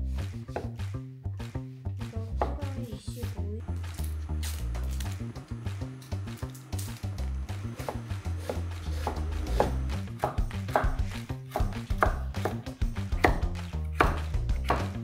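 Kitchen knife chopping vegetables on a wooden cutting board, a run of sharp irregular knocks, over background music with a steady bass line.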